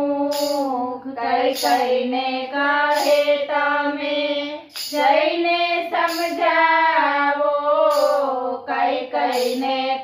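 Three women singing a Gujarati devotional bhajan to Ram together on one melody line, with long held, gliding notes.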